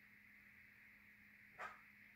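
Near silence with a faint steady hum, broken about one and a half seconds in by a single short dog bark.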